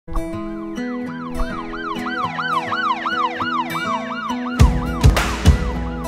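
Emergency-vehicle siren effect, rising and falling quickly about three times a second, over intro music with sustained notes. About four and a half seconds in, heavy drum hits come in and the siren fades out.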